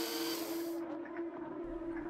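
A steady low drone, with a burst of hiss in the first second that cuts off.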